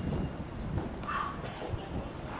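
Tennis players' footsteps on a clay court: scattered soft knocks and scuffs, with a short higher-pitched sound about a second in.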